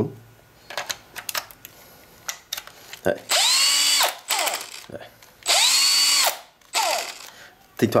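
Makita LXT 18 V brushless cordless drill run twice, each burst about a second long: the motor spins up, holds speed, then winds down as the trigger is released. It runs off a 14 V Bosch Li-ion battery through an adapter base, which drives it a little weak. A few handling clicks come before the first run.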